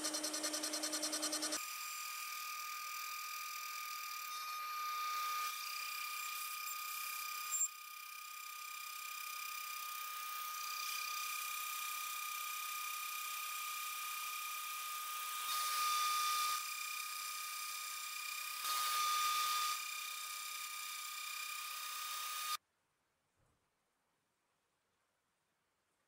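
CNC spindle whining steadily while a small end mill cuts slots in an aluminium part, the cutting noise swelling twice near the end before the sound cuts off abruptly.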